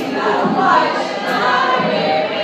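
A large group of voices, mostly women's, singing a song together in Portuguese.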